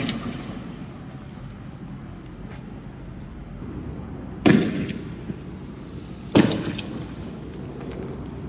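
Two loud shots about two seconds apart, each ringing out briefly, from tear gas launchers firing canisters at protesters.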